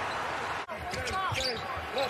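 Game sound of a basketball being dribbled on a hardwood court. It follows a brief wash of steady noise that cuts off suddenly under a second in.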